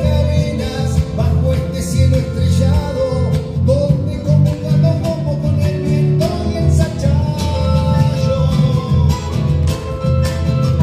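A live chacarera, an Argentine folk dance song, played on acoustic guitar, bandoneón and cajón, with a male voice singing over a steady rhythm.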